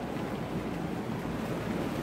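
Steady rushing noise of tropical-storm wind and heavy rain outside a window, even throughout with a low rumble.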